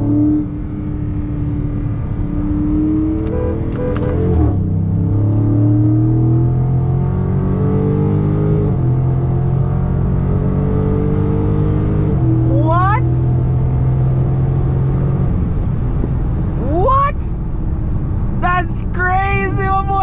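Dodge Charger Scat Pack's 6.4-litre HEMI V8 at full throttle heard from inside the cabin, its pitch climbing and dropping back at upshifts about four, nine and twelve seconds in. The engine note fades about fifteen seconds in, and excited shouting voices come in near the end.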